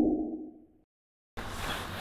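The tail of a whooshing intro sound effect under the title card, fading out within the first second. A short gap of dead silence follows, then faint outdoor background noise about a second and a half in.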